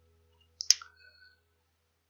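A single sharp computer mouse click about two-thirds of a second in, the only sound in an otherwise near-silent stretch.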